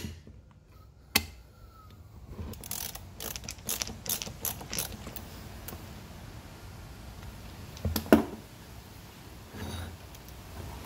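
Hand screwdriver driving screws into a vend motor's sheet-metal bracket: a run of quick, irregular clicks with a sharp click before them, and a louder knock of metal parts about eight seconds in.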